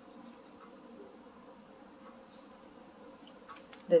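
Faint, high-pitched insect chirping, a short chirp about three times a second, fading out within the first second over quiet room tone. A few soft clicks come just before the end.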